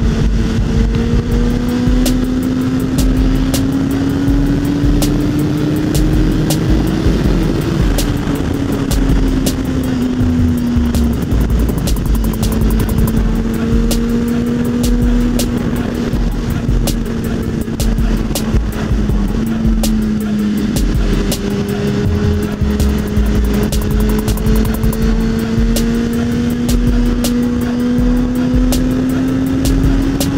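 Honda CBR1000RR Fireblade's inline-four engine at a steady cruise, its note climbing slowly for several seconds as the bike gathers speed, then dropping back, several times over. Background music with a pulsing bass beat plays under it.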